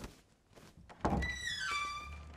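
A wooden door pushed open: a thud about a second in, then a creak whose pitch steps downward as the door swings.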